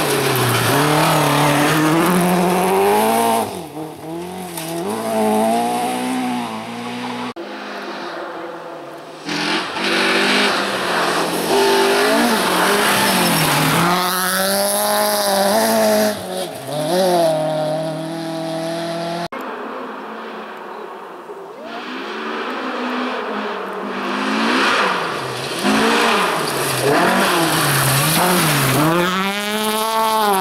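Rally cars on a gravel stage, one after another: engines revving hard and dropping back with each gear change and lift-off, with tyres scrabbling on loose gravel. Two abrupt cuts switch between cars: a BMW E30 at first, another BMW through the middle and a Volvo 240 near the end.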